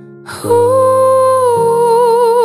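Pop ballad cover: a woman's voice comes in about half a second in and holds one long, loud note with vibrato over sustained backing chords. The chords change about a second and a half in.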